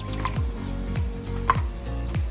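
Background music with a steady drum beat under sustained notes.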